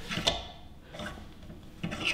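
Small bench vise being slowly tightened by hand to press a needle-bearing trunnion out of a rocker arm, with a few quiet clicks from the handle and the metal parts.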